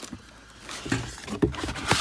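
Cardboard box and plastic packaging being handled and shifted, rustling, with a couple of sharper knocks or crinkles in the second half.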